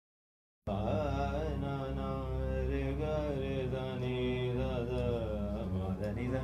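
A man singing a held, gliding melodic line, with a steady low drone beneath it from the electronic keyboard. It sets in about two-thirds of a second in, after a gap of dead silence.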